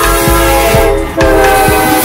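A diesel locomotive's air horn blowing a long chord as the locomotive passes close by, over background music with a steady beat.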